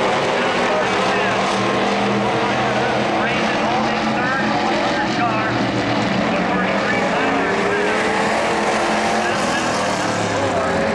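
Vintage dirt-track race cars running laps on the oval, their engines rising and falling in pitch through the turns.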